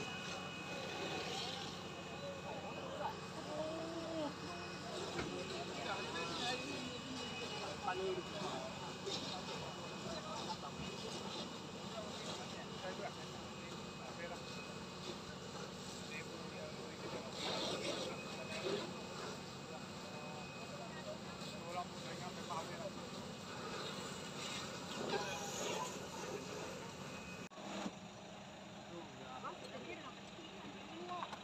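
Steady low engine drone of vehicles running at the scene, with scattered voices of onlookers talking over it; a little quieter after a sudden cut near the end.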